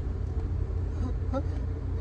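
Steady low rumble of a car's road and engine noise, heard from inside the cabin while driving.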